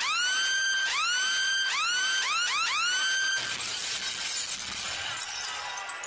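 A loud added electronic sound effect: a quick run of rising pitched swoops, about two a second, giving way a little over three seconds in to a hissing, shattering noise that stops at the end.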